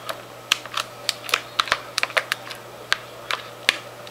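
A spatula clicking and scraping against a glass mixing bowl as cheesecake batter is poured out: a quick, irregular run of small sharp clicks over a faint steady hum.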